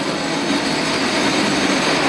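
Steady rushing noise of a passing motor vehicle with a faint hum, slowly growing louder.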